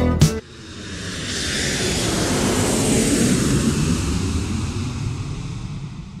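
Jet airplane fly-by sound effect: a rushing jet-engine noise with a low rumble that swells over about two seconds, then slowly fades away.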